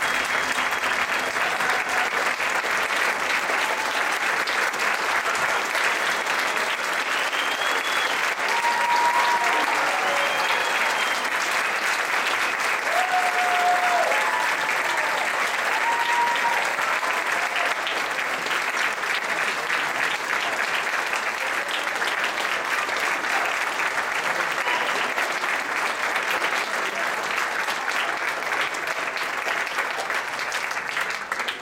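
Audience applauding steadily, with a few voices calling out above the clapping near the middle.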